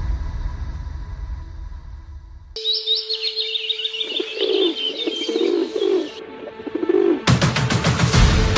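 Trailer music fades out and gives way to birds: high, quick chirping, then a low cooing call repeated several times. Loud music cuts back in near the end.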